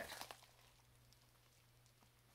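Near silence: a few faint crinkles of a plastic-wrapped package being handled in the first half second, then only a faint low steady hum.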